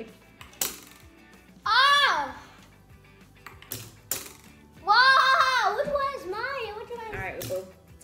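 Several short sharp clicks from craft-stick catapults, plastic spoons pressed down and released to flick cotton balls. Between them come wordless exclamations from a woman and a child.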